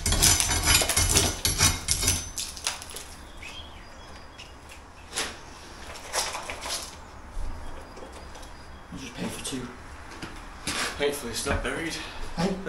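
A steel bar knocking and prying out brick and hard sand-and-cement mortar above a door frame, with pieces clattering down in a dense run over the first couple of seconds, then a few single knocks.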